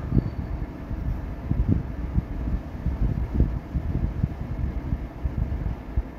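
Low, uneven rumble of pitchless background noise on the microphone.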